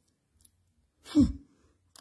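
A pause in a woman's talk: a faint click, then one short spoken word with falling pitch about a second in, before her speech picks up again at the end.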